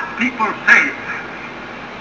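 A man's recorded sermon voice playing through a television's speakers: a few syllables in the first second, then a pause in the speech.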